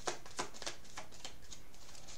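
A deck of tarot cards being shuffled by hand, overhand, the cards making soft, irregular clicks a few times a second as they drop and slap together.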